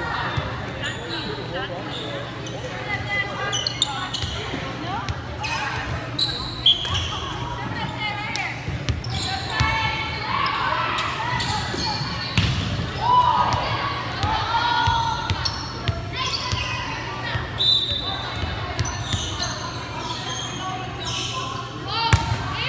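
Players' voices calling and chattering across a reverberant gymnasium during volleyball play, with scattered thuds of a volleyball being hit and bounced on the hardwood floor.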